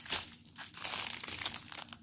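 Small plastic bags of diamond-painting drills crinkling as they are handled, an irregular rustle with a louder crackle just after the start.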